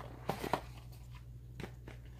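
A few light clicks and taps of cardboard as small advent-calendar doors are pried open and the items inside worked loose, two close together about half a second in and a fainter one later.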